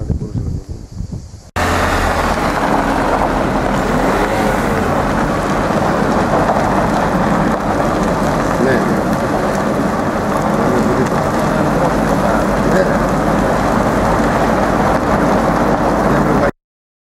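Vehicle driving on a gravel road, heard from inside: a loud, steady rumble of tyres on loose gravel and engine, starting abruptly about a second and a half in.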